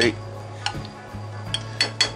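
A metal spoon clinks lightly a few times as sauce is spooned onto a ceramic plate, over soft background music.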